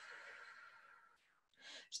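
A woman's faint, slow out-breath fading away: the long exhale of an anti-stress breathing exercise. It is followed by a moment of dead silence and a short intake of breath near the end.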